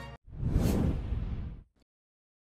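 A whoosh transition sound effect, swelling and dying away over about a second and a half, with a heavy low rumble under it.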